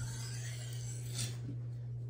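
A single faint scrape of a carbon-steel knife blade drawn across a whetstone about a second in, over a steady low hum.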